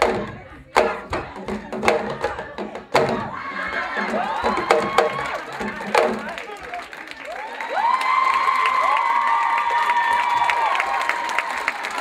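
Djembe hand drums struck in a few loud, separate strokes over the first three seconds, with one more about six seconds in, as an audience begins cheering. From about eight seconds the cheering grows louder, with long high shouts held over it.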